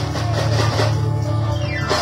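Live worship band playing a gospel song, with a steady low bass line under the instruments.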